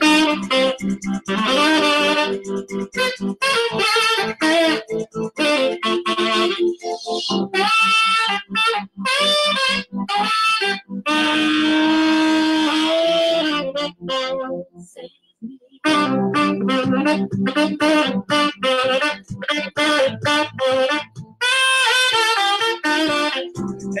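Saxophone playing a quick pop melody of many short notes, with one long held note about halfway through and a brief break just after, heard over a video call.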